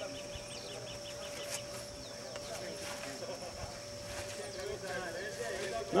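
Faint, distant men's voices over outdoor background sound, with a steady faint tone underneath.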